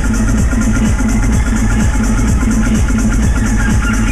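Electronic dance music with a steady kick drum of about two beats a second, played loud over a nightclub sound system.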